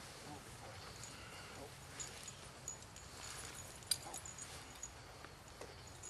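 Horses in harness being handled: scattered faint clinks and knocks of tack and hooves over a low background, the sharpest knocks about two and four seconds in.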